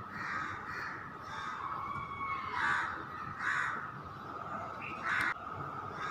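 A bird calling repeatedly in the background: about six short calls at uneven intervals over a steady low hiss.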